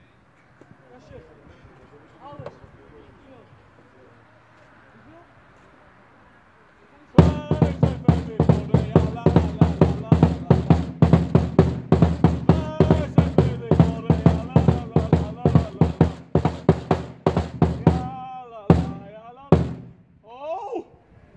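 Loud music with a fast, heavy drum beat and steady bass starts suddenly about seven seconds in and cuts off abruptly near the end. Before it, only faint distant voices.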